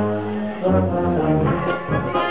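Brass band (Blasmusik) playing dance music, with low brass holding long notes through the first part.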